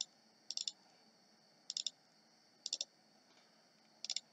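Faint computer mouse clicks: four quick bursts of two to four clicks each, roughly a second apart.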